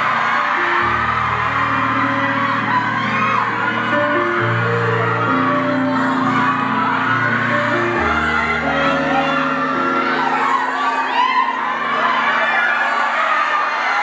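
Slow instrumental outro of a live ballad, sustained chords over a bass line that drops away about eight seconds in, with the audience cheering and whooping over it.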